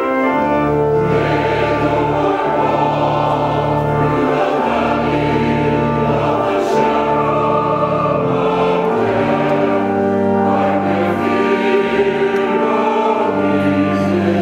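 Church choir singing an anthem in parts, over organ accompaniment holding sustained low notes.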